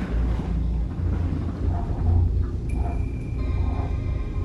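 Low, uneven rumble inside a moving cable car cabin. About two-thirds of the way through, background music with steady held tones comes in.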